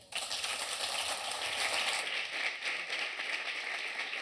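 Audience applauding, starting abruptly and easing off a little after about two seconds.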